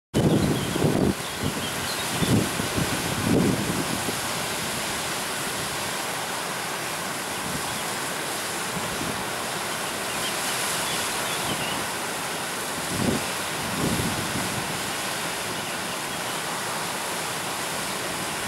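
Steady rushing of river water, with a few brief, louder low surges near the start and again about two thirds of the way through.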